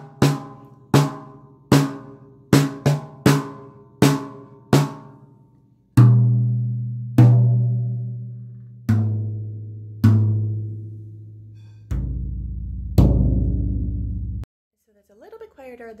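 Bamboo bundled rods (hot rods) striking a drum kit one drum at a time: eight quick hits on the snare, then two hits each on progressively lower toms, down to the floor tom, whose ring is cut off sharply near the end. The rods give a sound that is still loud enough but a little quieter than wooden drumsticks.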